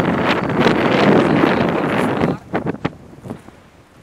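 Wind buffeting the microphone, loud for the first two seconds or so, then suddenly dropping away to a low rustle.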